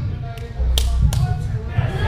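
Stage noise from a live band's amplified rig between songs: a few sharp clicks about half a second apart and a short low rumble through the PA.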